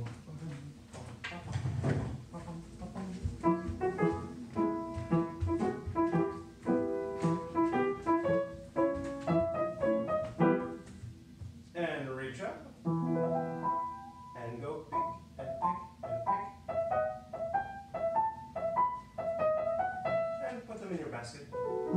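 Upright acoustic piano playing a tune of short, quick notes, entering about three seconds in after a few knocks, with a fast downward run of notes about twelve seconds in.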